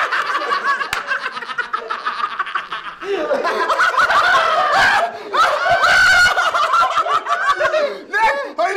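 Several people laughing loudly together, in overlapping cackles and hoots. There is one sharp click about a second in.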